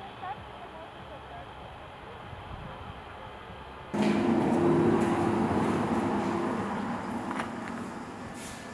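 Faint outdoor ambience with a few light chirps. About halfway through it cuts to louder ambience with people's voices talking in a large, bare, abandoned hall.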